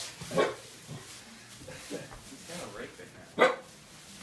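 A small curly-coated dog barking a few times at the Elmo costume head on the floor, with short separate barks, the loudest near the end.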